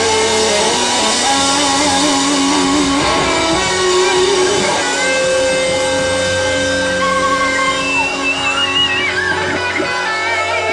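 Indie rock band playing live, with electric guitars holding long notes, some bending and wavering in pitch.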